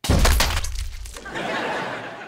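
A prop foam machine blasts foam out of its pipe nozzle with a sudden loud burst and a deep rumble. The burst lasts about a second, then eases into a lighter hissing spray.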